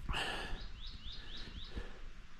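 A small bird calling: a quick series of five short rising chirps, about four a second, over a low background rumble.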